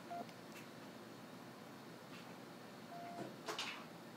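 Faint hiss, with a brief beep-like tone just after the start and again about three seconds in, then a sharp click of handling about three and a half seconds in, as headphones are switched on and plugged in.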